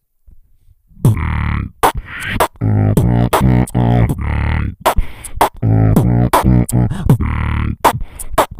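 Beatboxing into a handheld microphone with both hands cupped around it, starting about a second in: sharp clicks and hits over held low bass notes in a steady groove.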